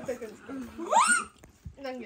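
Voices talking, with a short, sharply rising squeal-like vocal sound about a second in.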